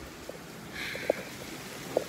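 Steady hiss of heavy rain, with a few light knocks and rustles from nearby movement.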